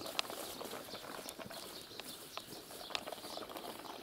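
Faint outdoor background with a few short, soft clicks scattered through it.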